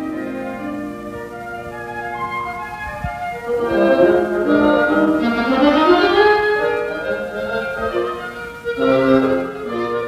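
Woodwind quintet of flute, oboe, clarinet, French horn and bassoon playing a classical piece, several instruments holding notes together. The music swells louder about four seconds in, with a rising run in the middle.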